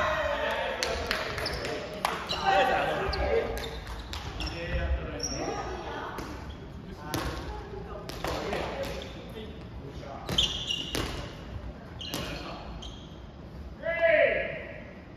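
Soft volleyball rally in a gym: repeated sharp slaps of hands and forearms on the light rubber ball and its thumps on the wooden floor, echoing in the hall, with players' voices calling between hits.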